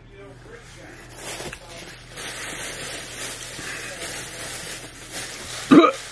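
A thin plastic bag rustling and crinkling as it is handled and opened, then a sudden loud vocal sound near the end as it is brought up to the mouth.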